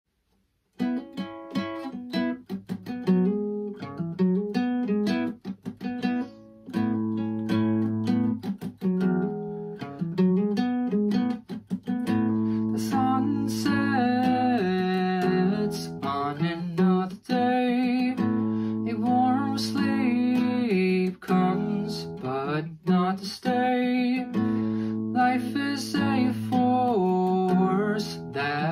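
Acoustic guitar playing a chord progression as an instrumental song intro, the chords ringing on between regular strokes. It starts just under a second in.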